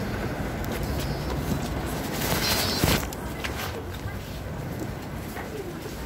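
Busy station ambience: indistinct voices over a steady low rumble, with scattered knocks and a brief high chirp about two and a half seconds in.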